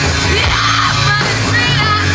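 Loud live rock band: a female lead singer belting into the microphone over electric guitar, bass guitar and drum kit played through the stage PA.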